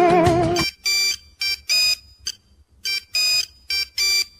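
Bollywood song music cuts off abruptly about half a second in. It is followed by a pattern of short high-pitched electronic beeps with silent gaps between them, like an alarm or ringtone melody, and the pattern repeats about two seconds later.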